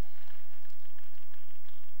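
Faint, scattered clapping from a congregation over a steady low hum from the sound system.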